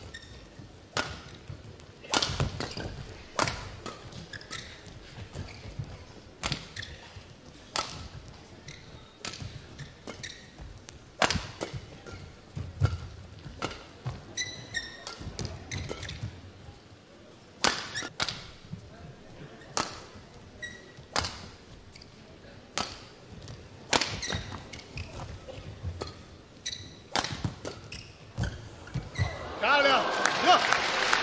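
A long badminton rally: rackets striking the shuttlecock about once a second, each hit a sharp crack in a large hall, with occasional short shoe squeaks on the court mat. Near the end the crowd bursts into cheers as the rally ends.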